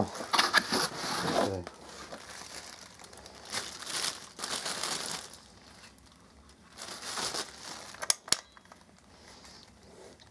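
Clear plastic packaging bag crinkling and rustling as it is handled, in uneven bursts that are loudest in the first couple of seconds. Two sharp clicks come a little after eight seconds in.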